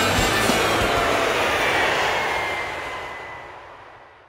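A jet aircraft passing over: a rushing roar with a faint, slowly falling whine that fades out over the last two seconds. The end of the rock theme music is heard at the start.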